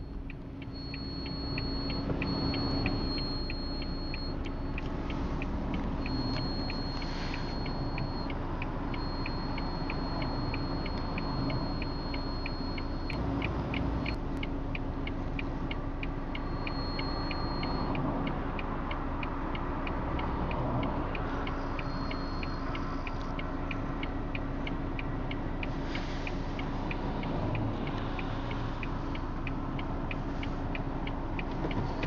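Car engine running, heard from inside the cabin, with the even ticking of the car's flasher relay over it. A thin high-pitched whine comes and goes.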